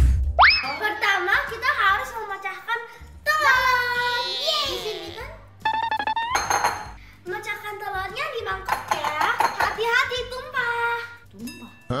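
Edited intro sting: a low thump as the logo appears and a rising boing effect just after it, followed by bouncy children's music with a child's voice.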